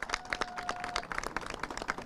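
A small crowd applauding by hand, giving many scattered, uneven claps. A thin steady tone sounds under the claps and stops about a second in.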